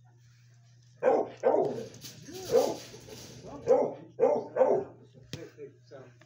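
A dog giving a string of short barks, about six over a few seconds, over a steady low hum.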